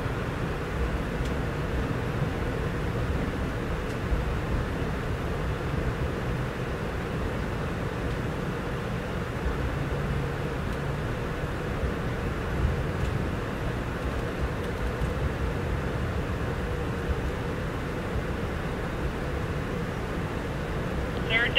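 Steady running noise heard inside an Amtrak Amfleet I passenger coach as the train rolls into the station: a continuous rumble of wheels and running gear on the rails, with a faint steady hum.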